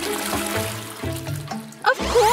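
Toilet flushing from a push-button cistern: a rush of water that fades out near the end, heard over background music.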